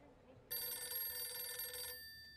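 A telephone rings once. The ring starts suddenly about half a second in, holds for about a second and a half, then its tones die away.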